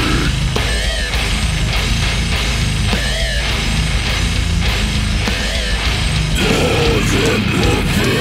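Brutal death metal music: heavily distorted, down-tuned guitars with bass and drums, played loud and without a break.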